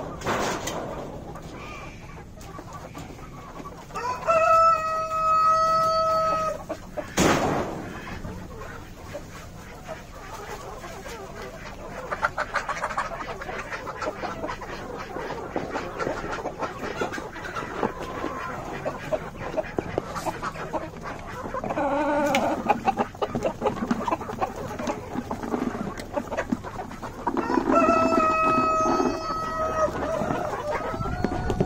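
A flock of domestic chickens in a pen: a rooster crows twice, a long held crow about four seconds in and another near the end, with hens clucking in between. Among them are a sharp knock about seven seconds in and many small clicks and knocks through the second half.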